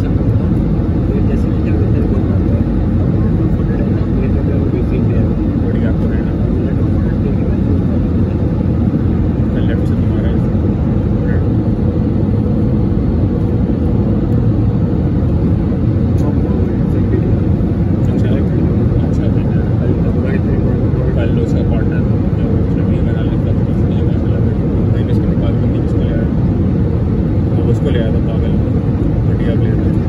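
Airbus A320 cabin noise heard from a window seat beside the engine: a loud, steady roar of the jet engine and airflow that does not change.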